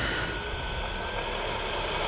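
E-flite F-16 Thunderbirds 80 mm electric ducted fan jet on its takeoff roll: a steady rush of air with a thin, high whine from the fan.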